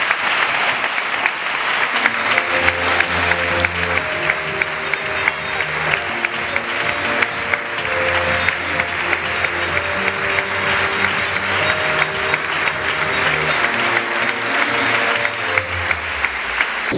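Audience applauding throughout, with acoustic guitar and violin music starting up underneath about two seconds in.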